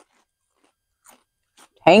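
Kettle-cooked potato chips being chewed, a few faint, scattered crunches. Near the end a voice says "tangy".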